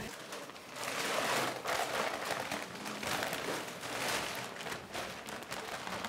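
A dry, granular ingredient poured from a paper sack into a large mixer bowl: a hissing rush that swells and eases in several surges as the sack is tipped.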